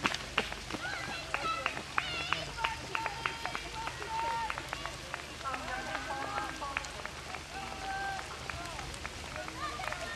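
Background chatter of several people talking at once, none of it clear words, with a few sharp clicks.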